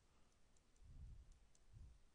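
Near silence: room tone with a few faint, light clicks from a stylus tapping on a tablet screen while writing.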